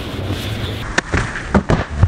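Steady rushing noise, then a few sharp thumps in the second half, about four knocks in quick succession.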